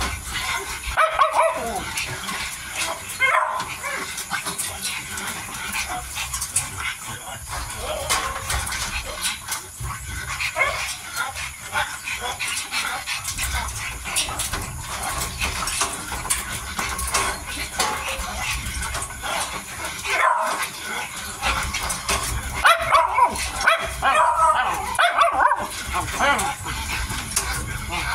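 Miniature dachshund puppies whimpering and yipping in short runs, most of all in the last few seconds, over small clicks and smacks as they eat from a shared bowl.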